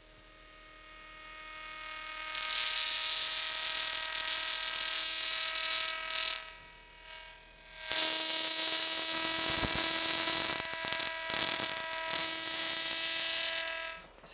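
Slayer exciter Tesla coil sparking from its metal top load to a hand-held wire: a loud hissing buzz over a steady hum. The buzz starts about two seconds in, drops away briefly around the middle and returns near eight seconds.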